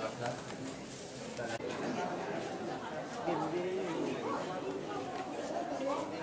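Background chatter: several people talking indistinctly in a crowd, with a few light clicks and knocks.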